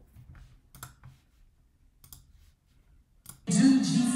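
A few faint, separate clicks, like a computer mouse being clicked. About three and a half seconds in, the audio of a church-service video starts playing much louder: a voice over music.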